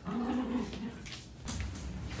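A black toy poodle gives a short whimpering moan near the start, asking for attention. About a second later comes a brief shuffling noise.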